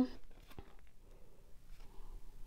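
Quiet handling of a cardboard disc being turned over in the hands, with a small click about half a second in.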